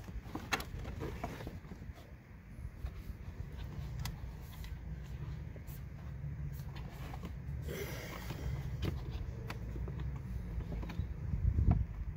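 Light plastic clicks and rubbing as a car's glove box and its cabin-filter access trim are worked into place by hand, over a low steady rumble. There is a brief rustle about eight seconds in and a thump near the end.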